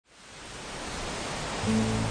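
Steady rain hiss fading in, joined about a second and a half in by low, sustained music notes.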